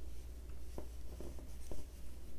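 Crochet hook working double crochet stitches in cotton yarn: soft rubbing of yarn on the hook with a few small, faint clicks, over a low steady hum.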